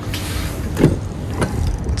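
A Chevrolet Traverse's front door being opened: a rustle as the handle is pulled, then a short knock about a second in as the latch releases and the door swings.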